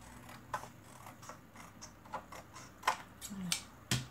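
Scissors snipping through a sheet of paper in short, irregular cuts, about nine sharp snips, with a louder click near the end.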